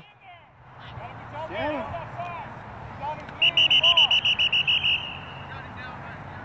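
A referee's whistle blown as a rapid string of short, shrill blasts for about a second and a half, midway through, over distant shouting from players and sideline spectators.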